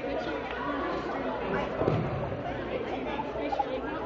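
Many students' voices chattering and overlapping, echoing in a large gymnasium, with a short thump about two seconds in.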